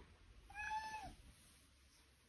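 A domestic cat gives one short meow, about half a second long, holding its pitch and then dropping at the end.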